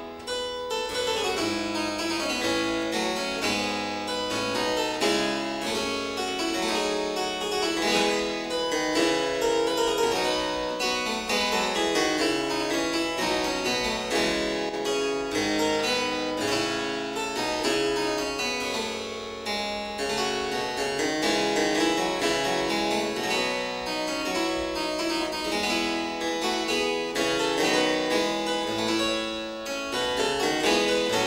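A harpsichord played solo, a continuous flow of plucked notes and chords without a pause.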